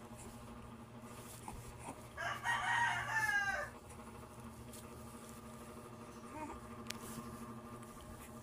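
A single loud, pitched call lasting about a second and a half, falling in pitch at its end, over a steady low hum.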